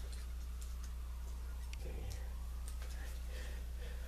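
Quiet room with a steady low electrical hum and a few faint, irregular light ticks and clicks while a small pocket knife is handled against a wooden bookshelf to measure it.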